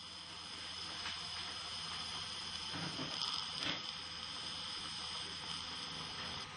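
Surgical suction tip hissing steadily as it draws blood and air from an open wound, with a few brief slurps.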